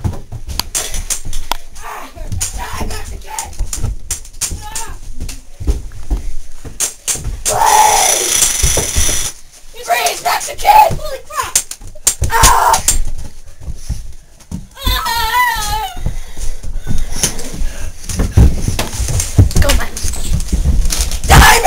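Children shouting and screaming, with scattered knocks and thumps from a scuffle and from handling of the camera. A long loud cry comes near the middle, and a wavering high-pitched cry follows a few seconds later.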